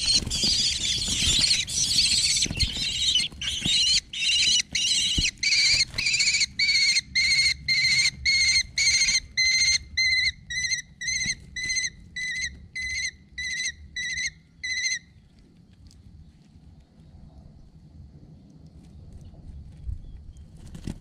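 Kestrel chicks begging as an adult lands in the nest box with a flutter of wings: harsh, continuous screaming at first that settles into repeated shrill calls about twice a second, stopping about fifteen seconds in.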